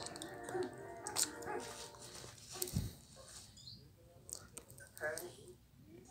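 Cartoon soundtrack played through a TV speaker and picked up in the room: wordless voice-like sounds and sound effects, with a short low thud near the middle.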